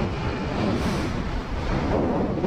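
Wind noise on the microphone over the running engine and tyres of a Kymco KRV 180 single-cylinder scooter while riding, a steady noise with no breaks.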